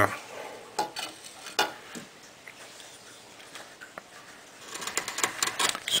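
A flat woodcarving chisel on wood: a few scattered light clicks and taps, then a quick run of scraping ticks in the last second or so as the chisel is set to the carving and begins to shave it.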